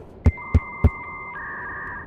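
Edited-in electronic sound effect: three deep thuds about a third of a second apart over a held synthetic two-note tone, which shifts to a new pitch about halfway through.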